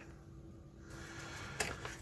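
Faint handling noise of a small circuit board and pouch battery being set down on a workbench cutting mat, with a couple of light clicks in the second half.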